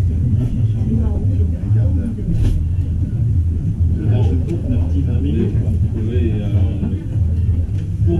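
Indistinct voices talking in a live club room over a constant low rumble, with a brief sharp noise about two and a half seconds in.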